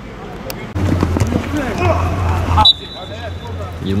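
Players' voices calling out on the pitch, then a referee's whistle blown once in a single steady note lasting about a second, near the end, for a foul.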